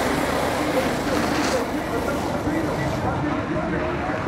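Crowd of spectators cheering and shouting, a steady dense din with many voices overlapping.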